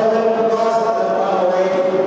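Spectators' sustained shouts of encouragement: several voices held on steady pitches.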